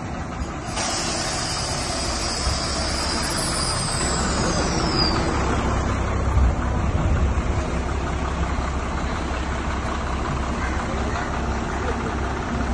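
Diesel tanker truck's engine running with a low, steady rumble. A hiss of air starts suddenly about a second in, like an air brake release.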